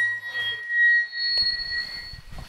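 PA feedback: a steady, high-pitched pure ring that a second, higher ring joins about a second in, with a few faint low knocks as microphones are handled.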